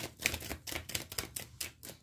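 Tarot cards being shuffled by hand: a quick run of crisp card flicks and snaps that thins out in the second half.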